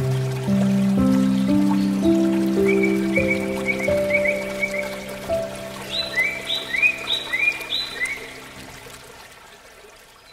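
Soft instrumental relaxation music: sustained low notes under a slow melody, with short high chirps repeating from about 2.5 s to 8 s, over a trickling water sound. The music fades out toward the end.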